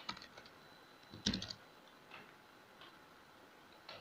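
Computer keyboard typing, faint: a few scattered keystrokes, with a louder cluster of key clicks a little over a second in.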